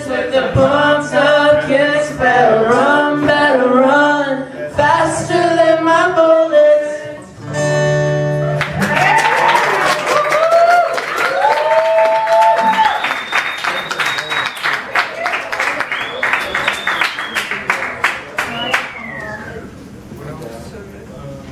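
Voices singing a wordless melody over acoustic guitar, closing on a sustained final chord about eight seconds in. Then an audience applauds and cheers, with a whistle in the crowd.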